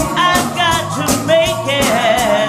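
Women's gospel group singing with vibrato, backed by instruments with a steady beat and shaken tambourines.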